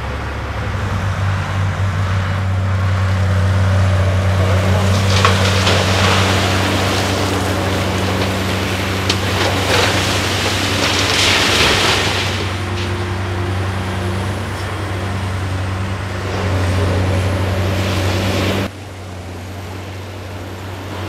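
Heavy diesel engines of a Cat 395 excavator and a Cat 775G haul truck running steadily. Twice, at about five seconds and again at about ten seconds, a load of rock pours into the truck's dump body. The sound drops off suddenly shortly before the end.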